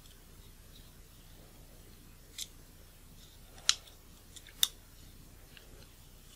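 A few light, sharp clicks of small metal parts and tools being handled on a disassembled Minolta Rokkor 58mm f/1.2 lens, the two loudest about a second apart in the second half.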